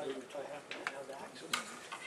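Faint voices murmuring in the room, with a couple of small sharp clicks about halfway through and near the end.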